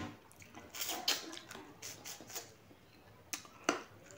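Wet eating sounds: chewing and lip smacks as beef and rice are eaten by hand, a scattered run of short sharp clicks, the loudest near the end.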